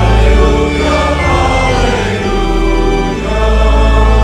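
Congregation singing a hymn together with organ accompaniment, the organ holding long low bass notes under the voices.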